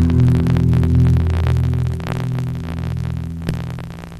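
Low, steady hum of the rock band's amplified instruments ringing on after the song's final chord and fading away gradually. A single click comes about three and a half seconds in.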